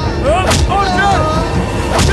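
Dramatic film soundtrack: a sharp hit about half a second in, over a steady low rumble and a drawn-out, wavering vocal wail.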